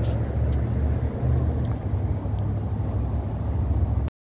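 Steady low outdoor rumble, with a few faint clicks from the phone being handled.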